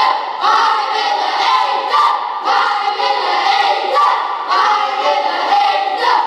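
A group of children singing together in unison, in phrases with short breaks about two seconds in and again past four seconds.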